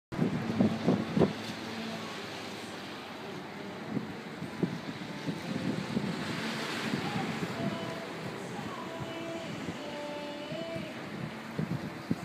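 Wind buffeting the microphone, with gusty thumps in the first second or so, over a steady wash of ocean surf. Faint music with a held melody comes in during the second half.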